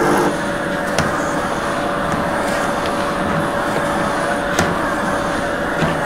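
Steam cleaner running while its microfiber head is worked over carpet: a steady hiss of steam with a steady hum, and a couple of faint clicks.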